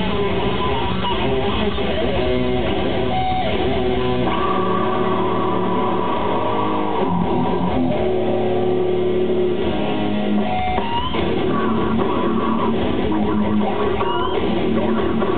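Live grindcore band playing loud: distorted electric guitar, bass and drums. For a few seconds in the middle the low end thins and held guitar notes ring out, then the full band comes back in.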